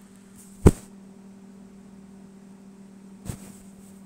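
A steady low hum, broken by a sharp click about two-thirds of a second in and a fainter click a little after three seconds.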